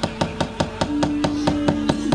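A wayang kulit dalang's wooden cempala knocking rapidly and evenly on the kothak puppet chest and keprak, about seven strikes a second. A steady held note comes in about halfway.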